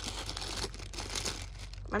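Clear plastic bags around squishy foam toys crinkling as a hand rummages through them in a box and picks one out: an uneven rustle.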